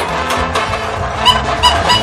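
Simple electronic tune from a battery-powered duck-pond picking game, with a few short bright notes close together in the second half over its steady music.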